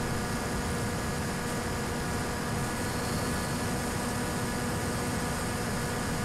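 Electric motor and propeller of an RC plane running steadily at cruising throttle, a constant whine over wind noise in flight.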